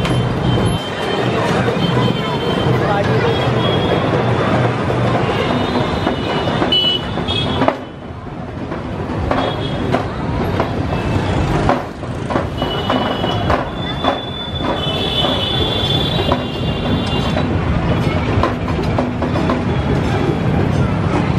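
Busy street noise: crowd chatter mixed with traffic and high-pitched vehicle horns, with a brief lull about eight seconds in.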